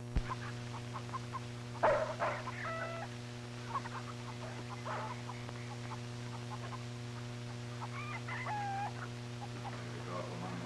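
Chickens clucking, with a longer rooster-like call about two seconds in and another near the end, over a steady electrical hum from the old recording. A sharp click at the very start.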